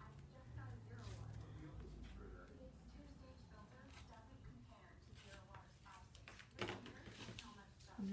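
Near silence: faint rustling and scratching of sheer fabric being handled and marked with a pencil, with a few brief brushes or taps, the loudest about two-thirds of the way through.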